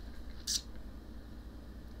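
Quiet room tone with a steady low hum, and one short hiss about half a second in.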